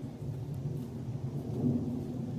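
Wind buffeting the microphone: a low, uneven rumble with no clear tone.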